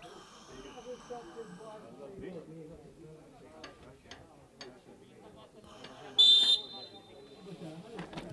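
Faint distant voices on an open football pitch, then about six seconds in a single short, loud, high-pitched whistle blast.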